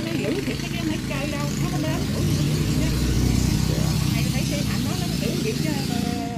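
A vehicle engine running close by, a steady low hum that grows louder in the middle and eases off near the end, under people talking in the background.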